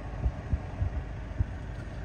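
A steady low rumble with a few soft, short thumps.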